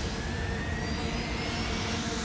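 Dramatic sound-effect riser: a steady rushing noise with thin tones slowly rising in pitch, building toward a hit.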